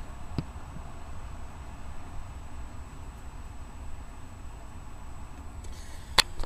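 Low, steady background rumble and hiss, with a single faint click about half a second in.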